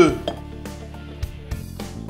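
Background music with steady notes, over which an egg is tapped against the rim of a glass mixing bowl to crack it, giving a few short clinks in the second half.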